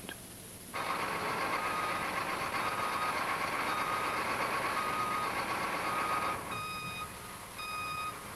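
Truck's reversing alarm beeping about once a second over steady vehicle running noise. The beeps are faint at first and come through plainly in the last second or two.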